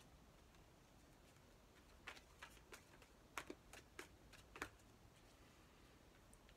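Faint clicks and taps of a tarot card deck being handled, about eight sharp, separate card snaps spread over two and a half seconds, starting about two seconds in, over near-silent room tone.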